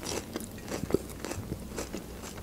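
Quiet close-up mouth sounds of chewing, with scattered small clicks, mixed with the soft sounds of a bread bun being handled and pulled open.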